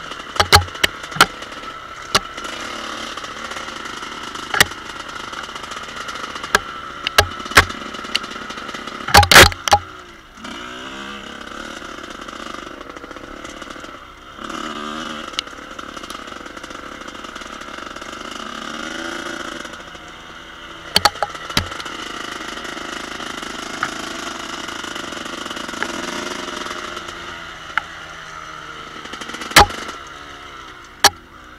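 1986 Kawasaki KX125's single-cylinder two-stroke engine running under way, its revs rising and falling as it rides a rough trail. Sharp knocks and clatter break in throughout, loudest in a cluster about nine seconds in and again around twenty-one seconds.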